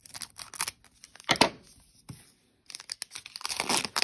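Foil wrapper of a trading card pack being torn open and crinkled by hand: scattered crackles, a louder tear about a second and a half in, and dense crinkling near the end.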